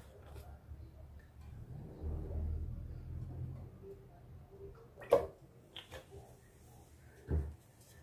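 Quiet kitchen handling as olive oil is poured from a glass bottle into an empty pot: a soft low rumble a couple of seconds in, then a few light knocks of the bottle and wooden spoon being handled.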